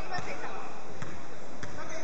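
A basketball being dribbled on a wooden gym floor, three bounces in two seconds, with voices in the background.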